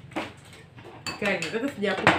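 A metal spoon clinking and scraping on a plate of rice as someone eats.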